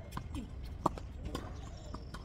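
Tennis ball being struck by rackets and bouncing on a hard court during a rally: about four sharp knocks, the loudest about a second in.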